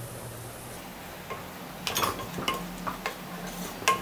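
Wooden spatula knocking and scraping against the side of a metal pressure cooker while stirring masala: a run of short knocks and clicks starting about halfway through, the loudest near the end.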